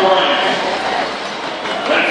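A man's voice over an arena public-address system, echoing in the hall, above a steady background din.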